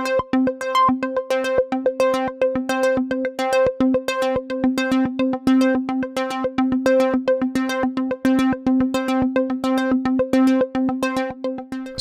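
Software synthesizer playing a fast, even run of repeated short notes. A note-triggered sequencer cycles the filter cutoff, so each note's brightness changes in a repeating pattern, while a second sequencer shifts some notes' pitch up to an octave higher.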